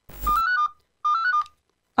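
A phone call cut off as the other party hangs up: a short crackle, then a brief electronic phone tone of a few stepped beeps, played twice.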